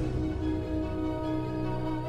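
Slow instrumental background music holding one sustained chord.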